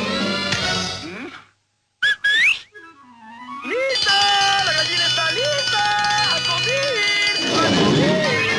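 Cartoon orchestral score breaking off into a brief silence, then a quick rising whistle about two seconds in. From about four seconds a bright metallic ringing from a struck dinner triangle sounds along with the music.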